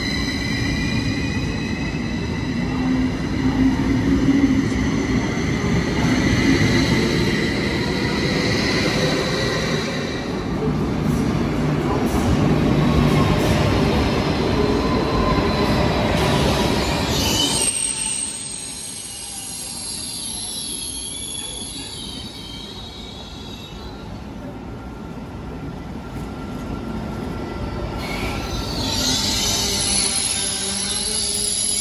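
Electric SBB trains in an underground station: a double-deck train runs along the platform with squealing wheels and whining drive tones. Then a second train rolls in and stops. Just past halfway the noise drops suddenly, leaving a quieter hum with a high whine, and it swells again near the end.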